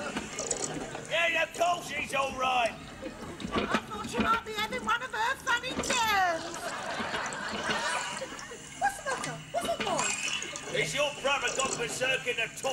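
Sleepy groans and mumbled vocal sounds from people woken in bed, with a long falling yawn-like cry about six seconds in. Beneath them is a steady wash of noise, fitting a faulty toilet cistern left running because it will not stop filling.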